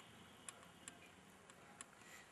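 Near silence: faint room tone with about five faint, irregular small clicks.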